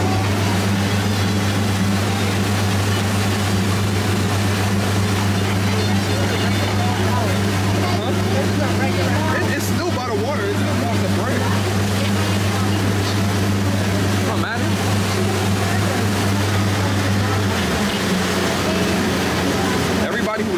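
Motorboat engine running with a steady low hum, over the rush of water and wind as the boat moves along a canal. Its pitch dips slightly near the end.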